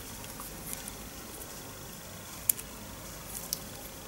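Small plastic clicks and handling noise from a replacement cartridge being pushed onto a Gillette Venus razor handle, with a sharp click about two and a half seconds in and another about a second later.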